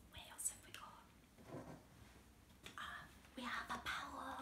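A woman whispering close to a microphone, ASMR-style, in short breathy phrases that come thicker in the last second or so.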